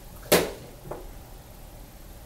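A short, sharp thump, followed by a fainter tap about half a second later.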